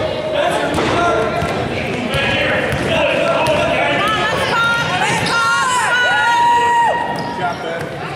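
A basketball bouncing on a hardwood gym floor, with sneakers squeaking in long high squeals about two-thirds of the way through as players scramble for a loose ball.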